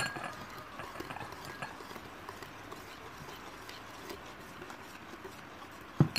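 Wire hand whisk beating flour into egg cake batter in a bowl, its wires ticking and clinking lightly against the bowl in quick strokes, with a sharper knock at the start and again at the end.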